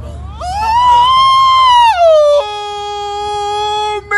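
A man's voice howling a long, very high note that rises, holds and drops away. He then jumps to a lower note held perfectly steady, over a low street rumble.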